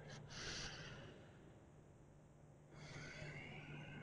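A man's slow, deep breathing, faint: one long breath as it begins and another from about three seconds in, over a low steady hum.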